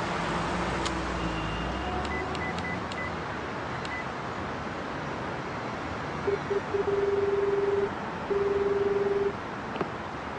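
Mobile flip phone being dialled: a few key presses, each a click with a short high beep, then the call ringing, a low rippling ring tone that sounds twice for about a second each after a few brief pips. Steady street traffic noise lies underneath.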